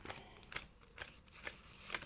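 Tarot cards being handled and laid down on a cloth-covered table: a few faint, brief card rustles and light taps.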